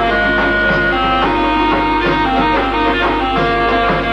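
Traditional folk music: held melody notes that step from one pitch to another over a steady, rhythmic accompaniment low down.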